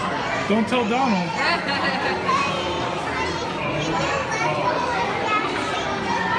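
Chatter of many voices in a busy, echoing dining room, with a young child's voice rising and falling about a second in.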